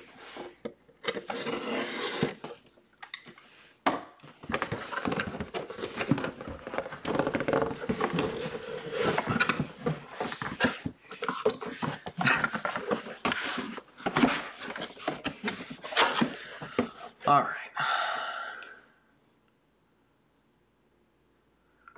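Cardboard shipping box being opened and unpacked by hand: a long run of irregular scraping, rustling and knocking of cardboard, stopping about a second before the end.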